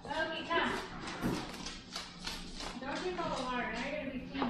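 Indistinct voice sounds, rising and falling in pitch throughout, with no clear words.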